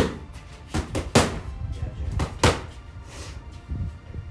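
Boxing training gloves smacking pads held by a trainer: a run of sharp punches, the loudest just at the start, about a second in and about two and a half seconds in, with lighter hits between.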